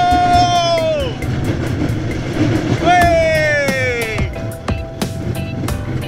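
Zierer family roller coaster train running on its steel track, with a rapid, even clatter from the wheels over a low rumble. A rider gives two long cries: the first is held and drops off about a second in; the second starts about three seconds in and falls in pitch.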